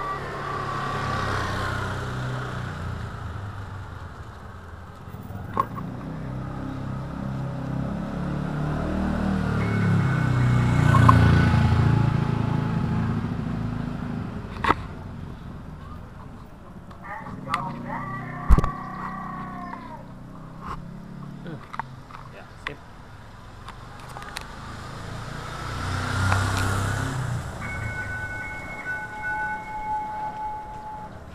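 Motor vehicle engines growing louder and then fading as they pass, once about ten seconds in and again near the end, with a few sharp clicks in between.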